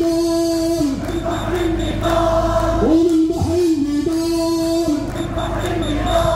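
A large crowd of marchers singing a slogan in unison, the voices holding long, drawn-out notes with short dips in pitch between them.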